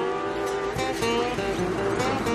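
Guitar music with notes ringing and sustaining, some of them sliding gently in pitch.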